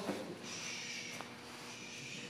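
Soft rustling of jiu-jitsu gi fabric and bodies shifting on a grappling mat, with a faint click about a second in.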